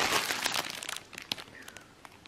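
Thin plastic bread bag crinkling as it is handled, loudest in the first second and then fading to a few faint rustles.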